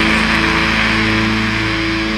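Black metal recording: a distorted electric guitar chord held and left ringing with no drum hits, starting to fade near the end.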